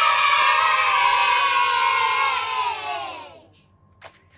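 A group of children cheering together in one long shout that falls in pitch and fades out about three and a half seconds in.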